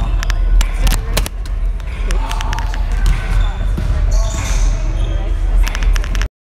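Basketballs bouncing irregularly on a hardwood court, with the murmur of people talking nearby and a steady low hum.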